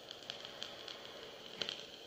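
Faint crackling and sizzling of e-liquid boiling on a 0.18-ohm coil in a rebuildable dripping atomizer, fired directly by a mechanical box mod during a long draw, with a few sharper pops about one and a half seconds in.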